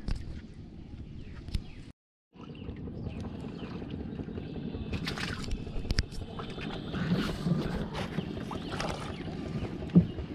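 Sounds of a small wooden boat being worked on the water: a few sharp knocks on the wood over a steady rush of wind and water, with a brief dropout a little after two seconds.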